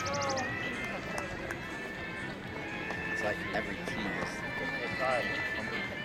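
Background chatter of spectators around a track-meet jump pit, with a thin steady high tone held through most of it.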